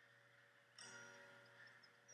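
Very faint acoustic guitar: a soft chord about a second in, left ringing out.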